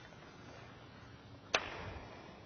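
A sharp click about one and a half seconds in, followed by a short swish that fades quickly, from a baitcasting rod and reel being worked.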